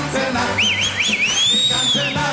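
A whistle warbling up and down three times, then sliding up and back down in one long glide, over a band of accordions and guitar playing carnival music.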